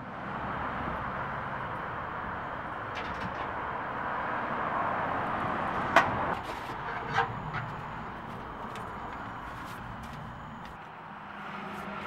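Steady outdoor noise, like a car passing, that swells and then fades away, with a few knocks and clicks as a wooden well windlass and its rope are handled, the sharpest knock about six seconds in.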